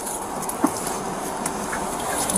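A patrol car's rear door being unlatched and swung open, with two short clicks over a steady rushing noise.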